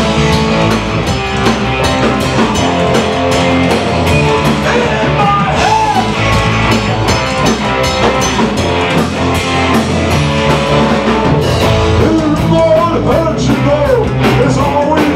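Live rock band jamming: electric guitars over a drum kit, with a steady beat and bending lead guitar or vocal lines on top.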